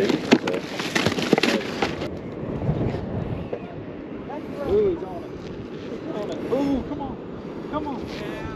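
About two seconds of rustling and clicking as a caught fish is handled into a plastic bag, then wind on the microphone with faint voices in the background.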